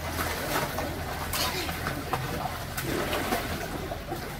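Water splashing as children kick and stroke through a swimming pool, with several sharper splashes among the steady churn.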